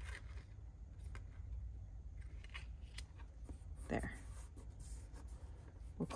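Soft handling of cardstock on a cutting mat: a few faint taps and rustles as a glued photo panel is positioned and pressed down by fingertips, over a low steady hum.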